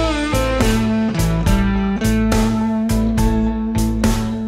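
Electric guitar playing a blues lick over a shuffle backing track with drums. It opens as a full string bend is released, then a pull-off and a few short notes, and about halfway through it settles on a long held root note sounded with vibrato.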